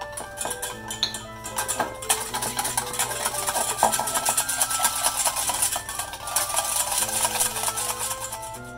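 Wire balloon whisk beaten fast around a stainless steel bowl: a rapid, continuous clinking and scraping that grows denser about two seconds in. The whisk is working vegetable oil, added little by little, into a thick yellow emulsion. Background music plays throughout.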